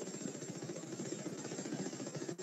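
Faint, steady background noise with a low rumble and no distinct events.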